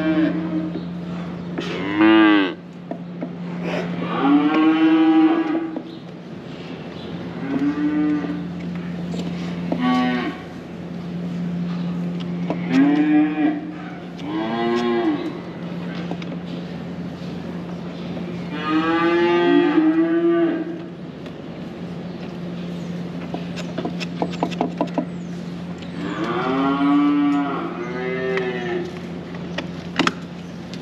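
Holstein heifers mooing, about nine separate calls of roughly a second each, over a steady low hum. A quick run of clicks comes about two-thirds of the way through.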